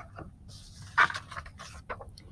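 Quiet handling noise from a cardboard flash card being picked up and raised: a light rustle and a couple of short knocks, the clearest about a second in and another near the end.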